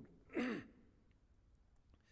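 A man's short, breathy sigh with falling pitch about half a second in, a brief pause in his preaching.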